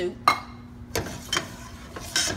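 A spoon knocking against the side of a stainless steel pot while a thin étouffée sauce is stirred: a few short, sharp clinks, the loudest about a quarter-second in and a couple more about a second in.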